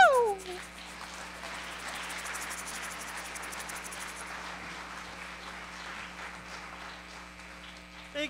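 A sung final note swoops up and falls away in the first half-second, then an audience applauds steadily, fading slightly toward the end.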